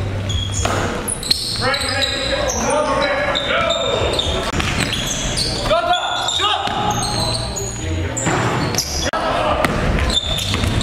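Basketball game play in an echoing gym: a basketball dribbling on the hardwood floor, with players' voices calling out on court.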